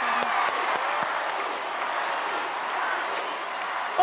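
Studio audience applauding, fading a little near the end.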